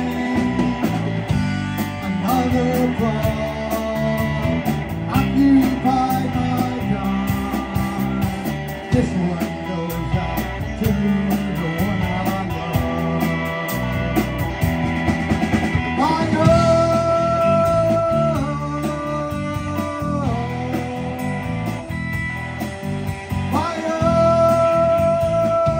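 Live rock band playing an instrumental passage between vocal lines: electric guitar, bass guitar and drums with a steady beat. Long held high notes come in about two-thirds of the way through.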